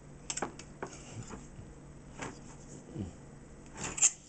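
Knife trimming excess pie dough around the rim of a pie pan: scattered light scrapes and clicks of the blade against the pan's edge, over a low steady hum.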